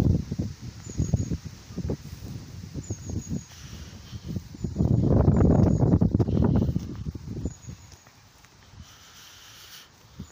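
Outdoor sound of walking on a park path with a phone: soft footsteps and rumbling on the microphone, loudest about halfway through. Faint short high bird chirps repeat every couple of seconds.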